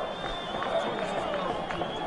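Live football pitch ambience: players' voices calling out across the field over a faint crowd haze, with a thin steady high tone running through.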